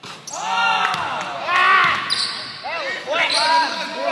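A basketball game in a gym: a ball bouncing on the court and sneakers giving several short, high squeals on the floor, echoing in the hall.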